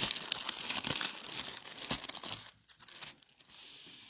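Thin Bible paper rustling and crinkling as it is handled, dense for about two and a half seconds, then dying down to a faint rustle.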